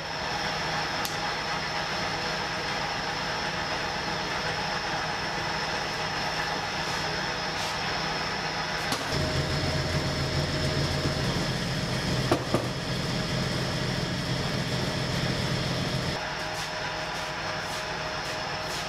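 Steady mechanical drone of bakery equipment running, with a thin high whine over it. From about halfway through, a deeper, louder hum joins for several seconds, with a couple of light knocks.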